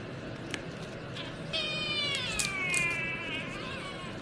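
Domestic cat giving one long, drawn-out meow that starts about a second and a half in and slides slowly down in pitch, begging for the food being handled in front of it. A few short clicks are heard around it.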